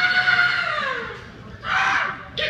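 A man's high, drawn-out yell through a PA system, held steady and then sliding down in pitch about a second in, followed near the end by a short second shout.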